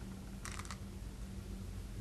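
A quick cluster of sharp clicks from Go stones, about half a second in, over a faint steady hum.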